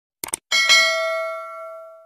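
Two quick mouse-click sound effects, then a single bell ding that rings on and fades over about a second and a half. These are the stock sounds of a subscribe-button animation: the click on the button and the notification bell.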